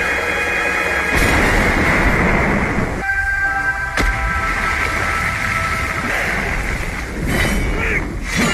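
Action-film soundtrack: loud score with steady held tones over a dense rumble of heavy rain. A single sharp hit lands about four seconds in.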